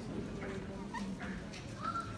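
Low murmur of a seated audience in a hall, with a few short high squeaks about a second in and one rising, briefly held squeal near the end.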